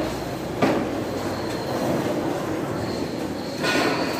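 A thin metal sheet being carried and laid onto a wooden skate ramp: a sharp knock about half a second in and a longer scrape near the end, over a steady background rumble.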